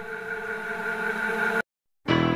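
A sustained electronic synthesizer chord with several steady pitches, swelling slightly, then cut off abruptly to complete silence about a second and a half in.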